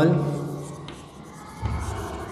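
Chalk scratching on a blackboard as a word is written by hand, with a dull low thump near the end.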